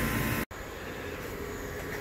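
Steady hum of a heat-pump unit's compressor and blower running, breaking off abruptly about half a second in and leaving a quieter steady hum.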